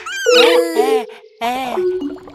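Cartoon baby dinosaurs' voiced calls: several short, high-pitched cries that rise and fall in pitch, with a brief pause about halfway through.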